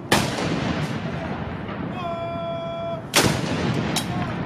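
Ceremonial salute cannons of a 21-gun salute firing blank rounds, two single booms about three seconds apart, each with a trailing echo. A steady held tone sounds for about a second just before the second shot.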